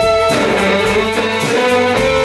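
Live band playing an instrumental passage: electric guitar over bass guitar and drums, with a violin playing held notes.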